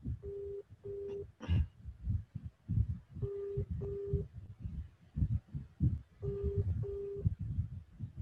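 Telephone ringback tone on an unanswered call to an Indian number: a low tone in double rings, two short beeps about every three seconds. Low irregular rumbling runs underneath, with a click about a second and a half in.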